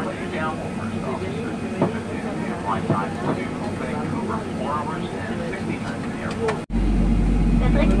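Indistinct voices over the steady hum of an airliner cabin. Near the end the sound cuts out for an instant and a louder, very low steady drone takes over under the voices.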